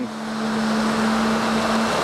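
Concrete pump truck placing concrete through its boom hose: a rushing noise that swells and fades, over a steady low hum that stops just before the end.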